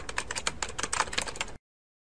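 Computer keyboard typing sound effect: a quick run of key clicks that stops suddenly about a second and a half in.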